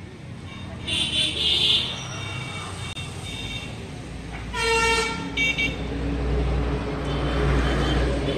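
A motorcycle's electric horn beeped twice in quick succession about halfway through, over a low steady rumble that grows louder in the second half. Shorter high-pitched tones come about a second in.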